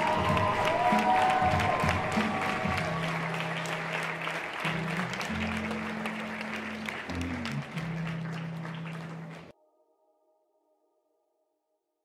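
Audience applause mixed with a soundtrack song's sustained bass notes, slowly getting quieter and then cutting off suddenly near the end.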